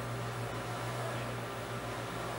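Steady low hum with a faint even hiss: room tone, with no distinct handling sounds.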